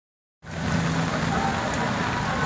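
Steady rain falling on a wet street, with a faint low hum underneath. It starts suddenly, about half a second in, after silence.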